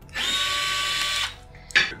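A DeWalt gyroscopic cordless screwdriver whines up to speed and runs steadily for about a second, spinning a drone's propeller nut off, then stops. A sharp knock follows near the end.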